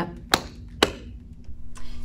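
Two sharp hand slaps, about half a second apart.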